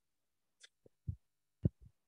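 A few faint, short low thumps, irregularly spaced, with one thinner high click just before them.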